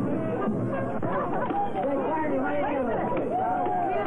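Several voices chattering and calling over one another, with a narrow, muffled sound typical of an early sound-film recording.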